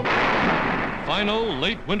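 A single field-gun shot: a sudden loud blast at the very start, its rumble dying away over about a second.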